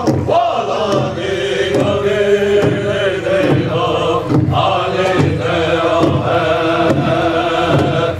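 A southern-style powwow drum group singing a flag song, voices chanting in unison over a large shared drum struck with sticks. There is a brief dip near the end.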